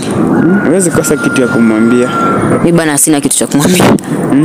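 Speech: voices talking, with no other sound standing out. A faint steady high tone sits under the voices for about two seconds in the first half.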